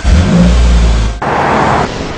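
Jeep Wrangler engine running loud and deep, followed about a second in by a loud rush of noise.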